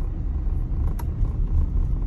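Car engine and road noise heard from inside the cabin while driving: a steady low rumble, with a single click about a second in.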